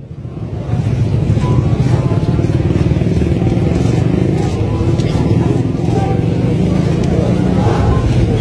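Loud, steady low rumble that starts about half a second in, with faint voices of the surrounding crowd.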